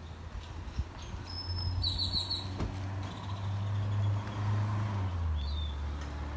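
A motor vehicle engine running nearby as a low, steady hum that grows louder through the middle and drops in pitch near the end. A short burst of high bird chirps comes about two seconds in.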